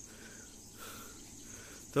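Insects chirring steadily in a high-pitched drone, like field crickets or cicadas.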